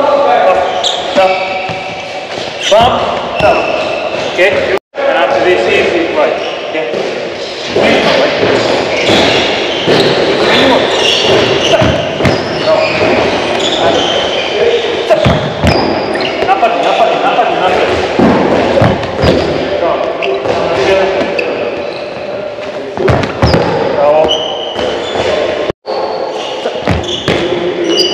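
Handballs bouncing and striking the wooden floor of a sports hall in repeated short impacts, with voices carrying in the echoing hall. The sound drops out suddenly twice.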